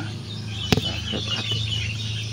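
Small birds chirping in quick, irregular high twitters, with one sharp click about three quarters of a second in and a steady low hum underneath.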